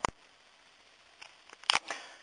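Sharp clicks from handling small hard parts: one right at the start and a quick double click near the end, with quiet between.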